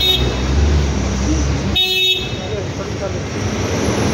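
Cars of a slow-moving motorcade, with a low engine rumble and two short high-pitched toots, one at the start and one about two seconds in, over people's voices.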